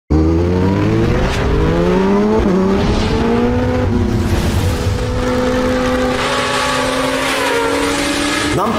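Engine sound effect of a vehicle accelerating hard: the pitch rises, drops at gear changes about two and a half and four seconds in, then holds steady at speed, with a rising whoosh near the end.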